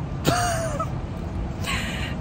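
A woman's short breathy vocal sound, like a gasp or 'ooh', a quarter second in. It holds one slightly falling pitch for about half a second. About a second later comes a quick breath, over a steady low outdoor rumble of traffic.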